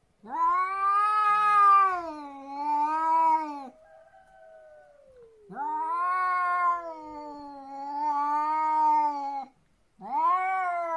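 Cats caterwauling in a standoff: two long, wavering yowls of three to four seconds each, with a fainter, lower moan between them.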